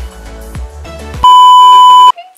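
Background music with a beat, cut off about a second in by a loud, steady test-tone beep, the kind that goes with a TV colour-bars pattern, held for just under a second.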